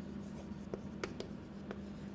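Chalk writing on a chalkboard: faint scratching with a few light taps as letters are written.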